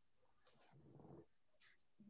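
Near silence: room tone over a video-call connection, with a faint, indistinct sound about half a second to a second in.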